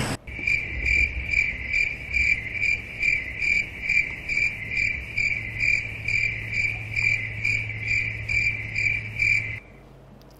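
Insect chirping in a steady, regular pulse of about three high chirps a second, over a low electrical hum; both cut off abruptly near the end.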